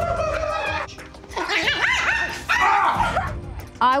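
A small dog barking repeatedly in high yaps, over background music.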